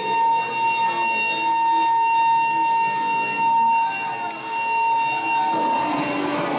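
Amplifier feedback from the band's gear after the last song: one steady high-pitched tone that rings on unchanged and fades out near the end.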